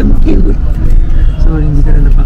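Steady low rumble of a moving coach bus's engine and road noise heard inside the passenger cabin, with a voice talking over it.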